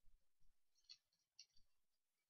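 Very faint crinkling of a foil trading-card pack handled in the hands, a few soft rustles about a second in and again a little later.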